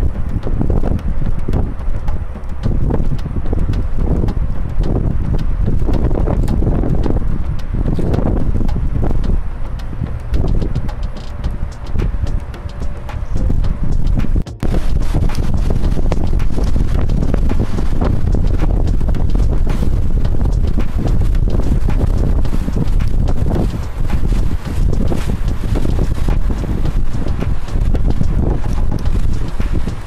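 Wind buffeting the camera microphone on the open deck of a moving river cruise boat: a loud low rumble, gusty in the first half, with a brief drop about halfway through.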